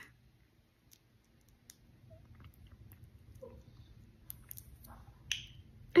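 A woman weeping quietly between words. There is near silence for a second or so, then faint wet mouth clicks and small breaths, and a sharp sniff shortly before she speaks again.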